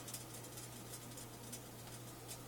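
Quiet room tone: a steady low hum with faint scattered light ticks, and no clear event.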